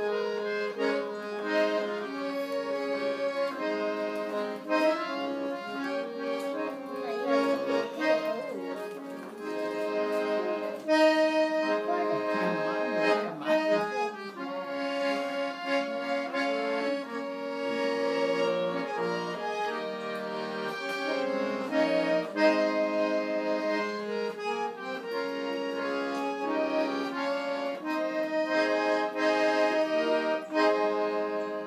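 Piano accordion played solo: a melody of changing notes on the right-hand keyboard over held lower notes.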